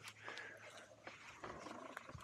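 Sur-Ron electric dirt bike moving slowly through a three-point turn on a dirt trail: faint, uneven whine from the electric motor in short spurts, with tyres scuffing and crunching on dirt.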